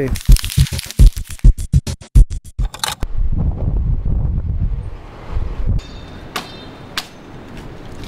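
A quick run of sharp percussive hits that comes faster and faster over the first three seconds. A low, steady rush of wind follows, settling to a quieter outdoor background with a few single clicks near the end.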